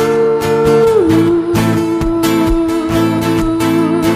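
A girl singing a long held note that slides down to a lower one about a second in and holds it, over a strummed acoustic guitar.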